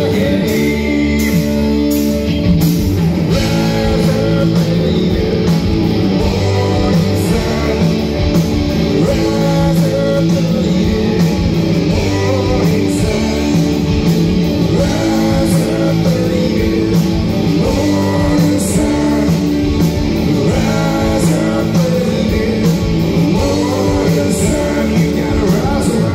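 Live rock band playing, electric guitars over a drum kit, loud and continuous.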